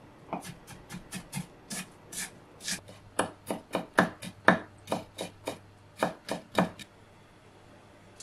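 Kitchen knife chopping on a wooden cutting board as onion and then garlic are minced: quick, sharp chops, about three a second. The chops get louder about three seconds in and stop about a second before the end.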